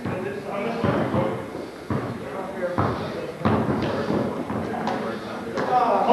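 A basketball bouncing on a gym floor during play: about five uneven thuds, echoing in a large hall, under indistinct voices of players and onlookers.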